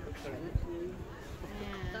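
Mostly people's voices talking aboard a boat, over a low steady rumble, with a short thump about half a second in.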